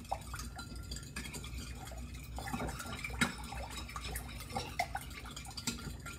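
Spoon stirring tamarind juice in a glass mixing bowl: liquid swishing with irregular light clicks of the spoon against the glass, one sharper click about three seconds in.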